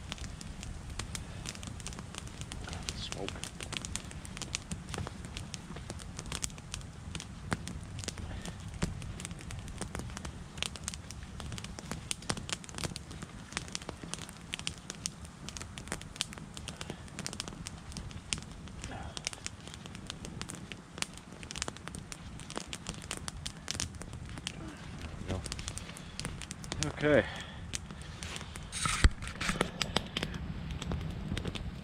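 Wood campfire crackling, with frequent irregular sharp snaps and pops over a steady low rumble. The fire is burning down toward cooking coals.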